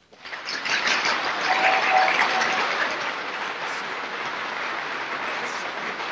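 Audience applause on an old newsreel soundtrack, breaking out at the end of a speech. It builds over the first second or two, then slowly dies away.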